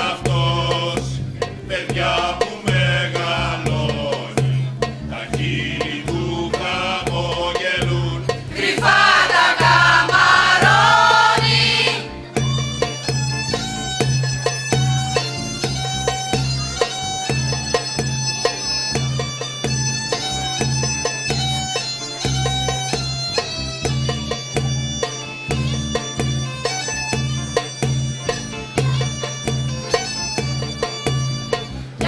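Mixed choir singing a traditional folk song to a Thracian gaida (bagpipe), whose steady drone runs underneath. The singing swells loudest around nine seconds in and stops at about twelve seconds, after which the gaida plays the melody alone over its drone.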